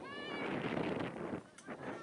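People shouting on the sideline: a high-pitched yell that falls in pitch at the start, with further shouting and general noise after it.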